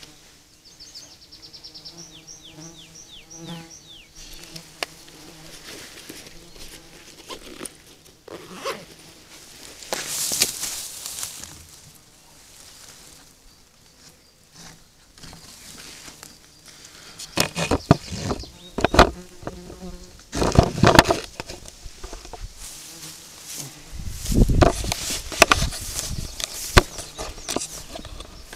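Insects buzzing close to a trail camera's microphone, with a quick run of high falling chirps in the first few seconds. From about 17 seconds on, loud knocks and rustling come as the camera is handled and moved.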